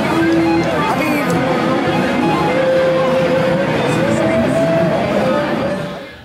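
Aristides 070 seven-string electric guitar played lead, with held, bent notes and vibrato, over the dense chatter of a trade-show floor.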